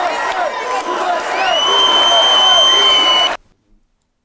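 Concert crowd cheering and yelling. About a second and a half in, a long shrill whistle rises and holds over it as the loudest sound. Everything cuts off suddenly near the end.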